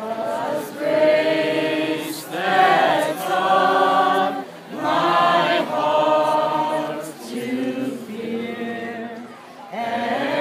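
A crowd singing together in long held phrases, with short breaks about every two to three seconds.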